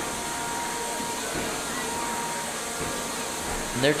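Steady whirring hiss of 3 lb combat robots' spinning weapon and drive motors, with a faint high whine that comes and goes and a few soft knocks.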